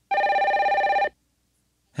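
Telephone ringing once: a single ring about a second long with a fast trill.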